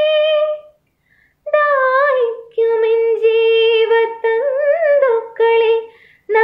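A woman singing solo and unaccompanied. A held note fades out before a second in, and after a short breath she goes into long sustained notes with wavering ornamented turns.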